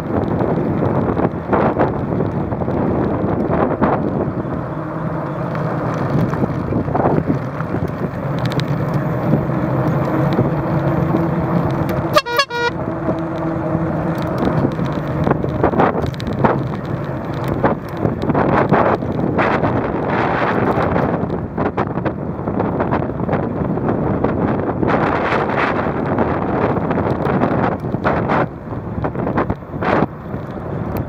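Riding noise from a moving bicycle: wind buffeting the microphone and tyres rolling over asphalt and then gravel, with frequent rattles and knocks. A steady low hum runs under it from about five seconds in until about fourteen.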